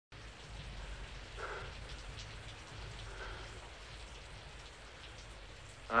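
Steady rain falling, an even soft hiss, with two faint brief sounds about one and a half and three seconds in.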